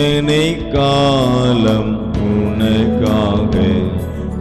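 Tamil Catholic communion hymn: a voice singing a gliding melody over sustained instrumental accompaniment.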